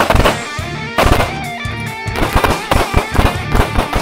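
Pistol shots from several shooters firing at once, sharp cracks in quick, irregular strings: a cluster at the start, more about a second in, then a dense run through the second half. Background music with electric guitar plays under the shots.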